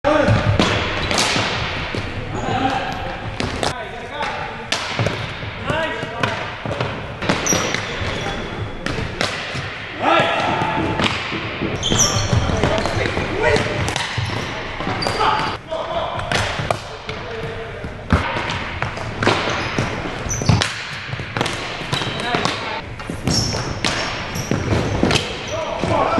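Ball hockey play in a large gymnasium: hockey sticks clacking against each other and the ball, and the ball knocking on the hardwood floor, net and walls in a quick, irregular run of sharp hits. Players shout and call out throughout.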